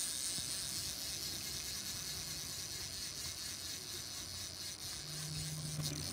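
Steady running noise of a fishing boat's outboard motors, a low rumble under an even hiss of water, with a faint hum coming in briefly near the end.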